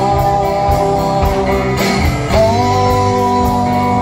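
Live band playing a rock song: acoustic guitar, electric bass and a drum kit, with long held sung notes that change pitch about halfway through.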